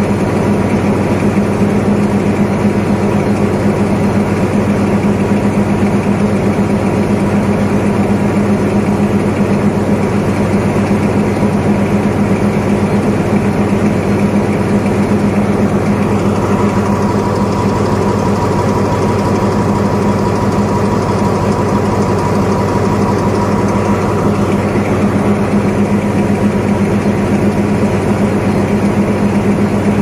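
Alsthom diesel-electric locomotive No. 4401 idling at close range: a loud, steady, deep engine drone. About halfway through, a higher steady whine joins in for several seconds and then fades.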